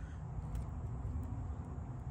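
Faint, steady outdoor background: a low, even rumble with no distinct events.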